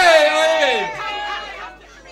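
A man's voice amplified through a microphone, holding a drawn-out 'yeah' that bends down in pitch and fades after about a second and a half, leaving room chatter.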